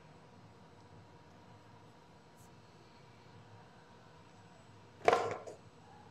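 Quiet gym room tone, then about five seconds in a sudden loud thud with a short ring, followed by a smaller knock, as a 145 lb barbell snatch is pulled and caught in the overhead squat.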